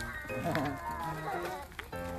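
Background music with steady held notes. About half a second in, a farm animal gives a short, wavering bleat, with a shorter call near the end.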